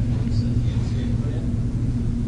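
A steady low hum from the room or sound system, with an audience member's faint, distant voice asking a question off-microphone.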